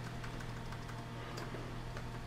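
A few faint, scattered key clicks from the Omnio WOW-Keys keyboard being typed on, over a steady low hum.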